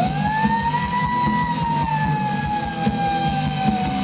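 Rock band playing live with guitars and drums, topped by one long held high note that slides up at the start and then slowly sags in pitch.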